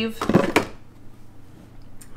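Brief rustling scrape of a rectangular eyeshadow palette's plastic sleeve being handled, in the first half second, then quiet.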